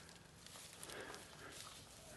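Faint footfalls of a humped bull walking through pasture grass: a few soft hoof thuds and grass rustling.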